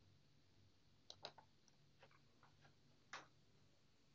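Near silence with a few faint, short clicks scattered about one to three seconds in.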